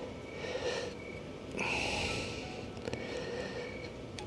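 A person breathing out audibly through the nose about halfway through, while working a ratcheting torque wrench on a bolt. A few faint clicks of the wrench's ratchet come a little later.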